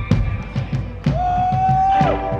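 Live psychedelic rock band playing an instrumental passage: a drum kit beating steadily under bass guitar, with a held note that slides up about halfway through and then sustains.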